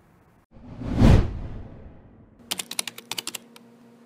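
Outro sound effects. About a second in comes a swelling whoosh with a low boom, then from about two and a half seconds a quick run of keyboard-typing clicks as a web address is typed into a search bar. A few more clicks come right at the end.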